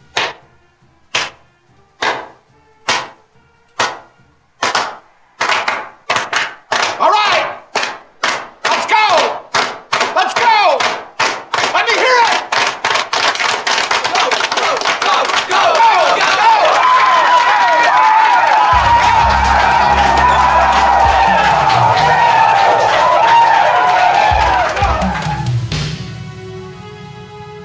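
A team of young men shouting a chant in unison, one shout about every second at first, speeding up until the shouts run together into continuous yelling and cheering. Low music comes in under the yelling in the second half.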